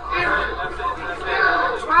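Speech only: men's voices talking over a background of crowd chatter.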